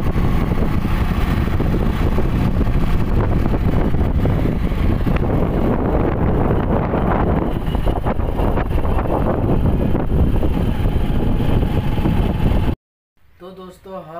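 Wind buffeting the microphone over a motorcycle's engine and tyre noise while riding at about 40 km/h, a loud steady rush heaviest in the lows. It cuts off abruptly near the end, and a man starts speaking in a small room.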